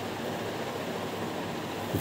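Steady, even hiss of room noise from a ceiling fan running overhead, with no distinct events.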